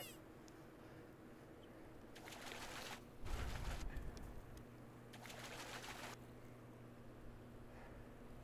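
Hooked smallmouth bass splashing at the water's surface by the rocks in three short bursts, over a faint steady low hum.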